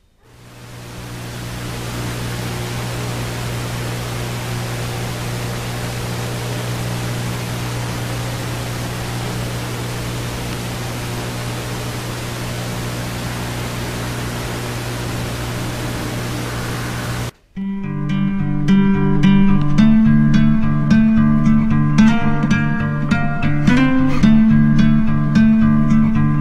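A loud, steady hiss with a low steady hum beneath it, cutting off abruptly about seventeen seconds in. Plucked guitar music then starts and runs on.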